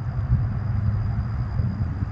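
Steady low outdoor rumble with no clear events, and a faint thin high tone held throughout.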